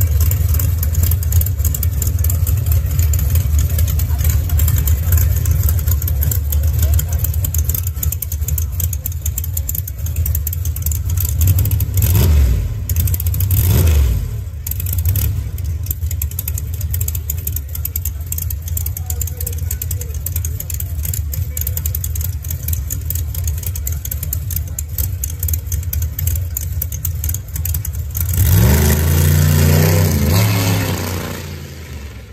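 Drag car engine idling with a heavy, uneven low rumble, blipped twice in quick succession about halfway through, then revving up near the end as the car pulls forward.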